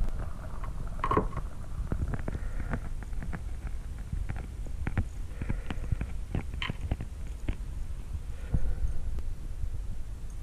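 A homemade ice-fishing jig fly being worked up and down in a bucket of water: light splashing, with scattered small clicks and knocks over a steady low rumble.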